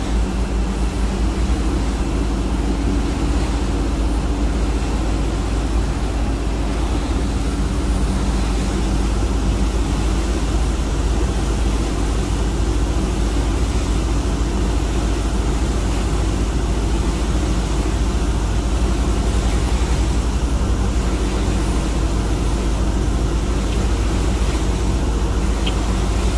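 Steady, loud engine drone from a crew launch boat running at speed alongside a moving ship.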